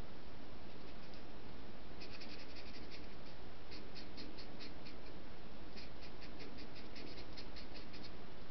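Ink pen scratching on paper in runs of quick, short strokes while shadows are hatched and filled in on a comic page. The strokes start about two seconds in and come in three bursts, over a steady background hiss.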